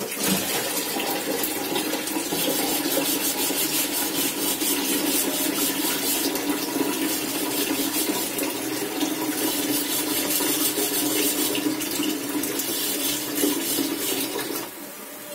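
Grated coconut and jaggery mixture sizzling and bubbling steadily in a non-stick frying pan on an induction cooker over low-medium heat.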